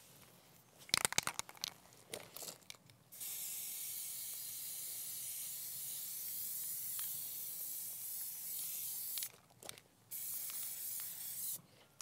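Aerosol spray can spraying a matte coating onto a plastic duck decoy: a few short clicks first, then one long hiss of about six seconds and, after a brief pause, a second shorter burst.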